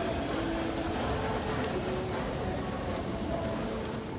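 Escalator running: a steady mechanical rumble blended with the hum of a busy shopping mall, with a few faint short tones, likely distant voices, drifting over it.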